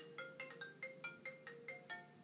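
A phone ringtone playing a quick melody of short pitched notes, about four or five a second, heard faintly.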